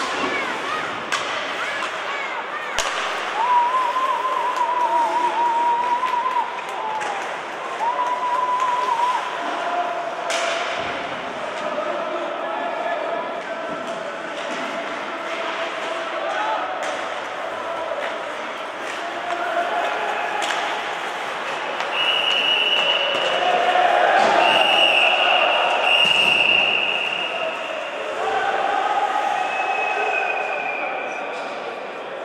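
Ice hockey rink sounds: voices shouting, sharp knocks of puck and sticks against the boards, and, over the last several seconds, several steady high blasts of a referee's whistle as play is stopped around a scuffle along the boards.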